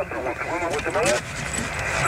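Speech: a man talking for about a second, then steady background noise with no clear source.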